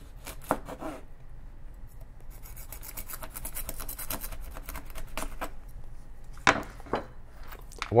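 Kitchen knife blade sawed rapidly back and forth across a stainless-steel chainmail cut-resistant glove: a fast scraping rasp of steel on steel rings. The blade is not cutting through the mail.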